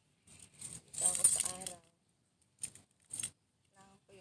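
A bunch of keys on a lanyard jangling as it is handled and put on round the neck, loudest about a second in, then two short jingles near the end.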